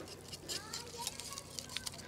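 Wire whisk stirring a thick béchamel sauce with chopped wild garlic in a small stainless steel saucepan: soft, irregular clicks and scrapes of the wires against the pan.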